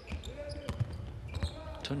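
A basketball being dribbled on a hardwood court, a few bounces, with faint voices in the background.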